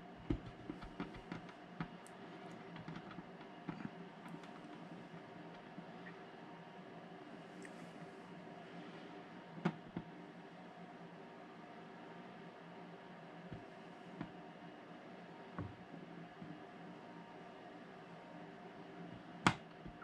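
Faint, steady electrical hum with sparse small clicks and taps of a soldering iron tip against a model railway rail joint as old solder is melted off; the two loudest clicks come about halfway through and near the end.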